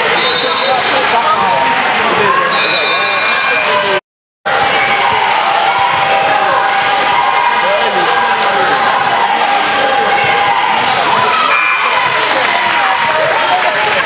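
Basketball game sound in a gym: a ball bouncing on the hardwood court among many overlapping spectators' and players' voices, with a few short high squeaks. The sound cuts out completely for a moment about four seconds in.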